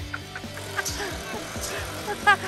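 An engine running steadily with a low, even hum, under faint distant voices and a few light knocks.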